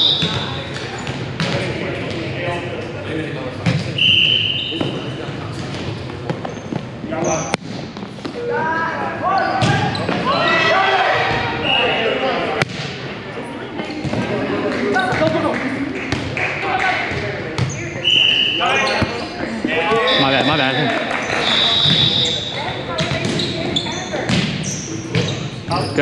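Volleyball rally in a gym: sharp hits and thumps of the ball, short high sneaker squeaks on the hardwood floor, and players' voices, all echoing in the hall.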